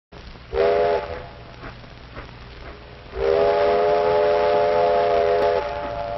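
Train whistle blowing a short blast and then a long one, several tones sounding together as one chord. It plays over the steady hiss and crackle of an old optical film soundtrack.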